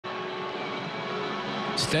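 Steady stadium background noise from a football broadcast. A male commentator's voice starts near the end.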